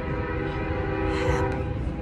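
Train horn sounding a long, steady chord over a low rumble.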